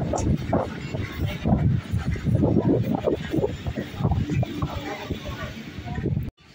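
Indistinct talking from voices nearby, with a low rumble of wind on the microphone.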